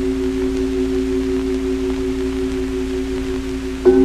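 Sustained drone music of two steady held tones over a low hum and hiss; near the end higher tones join and it gets louder.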